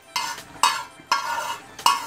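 Steel spatula scraping across a dark frying pan in four quick strokes about half a second apart, pushing fried fish out of the pan, with a little oil sizzle.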